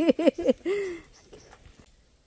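A woman's voice in short, quick laughing bursts for about the first second, trailing off into a drawn-out vocal sound, followed by faint small clicks.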